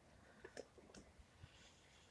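Near silence with a few faint, short taps and rustles in the first second and a half: a gloved hand tapping down compost in a plastic seed module tray.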